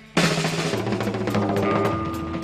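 Live rock band with the drum kit out front: after a brief lull, the full band comes back in suddenly a moment in, loud and dense.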